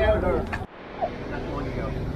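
People's voices that cut off abruptly just over half a second in, followed by a quieter, steady outdoor rumble.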